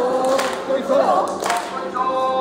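Kantō festival music: a bamboo flute playing sustained, bending notes over taiko drum strikes, about one stroke a second, two in this stretch.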